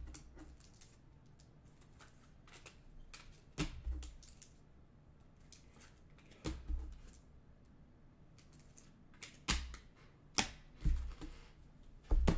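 Trading cards and plastic card cases being handled and set down on a table: a few separate quiet clicks and taps with soft thuds, a few seconds apart and coming closer together near the end.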